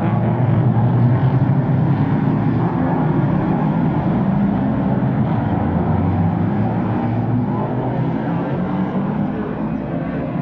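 Engines of a pack of American cup racing cars running at speed as they pass close by on a short oval, a loud steady drone that eases slightly near the end.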